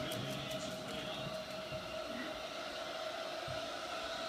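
A steady hum at one constant pitch over low background noise, with no clear distinct events.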